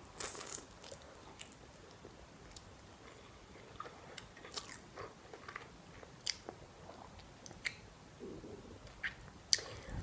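A close-miked mouthful of noodles slurped in at the start, then chewed, with scattered short wet clicks from the mouth as it goes.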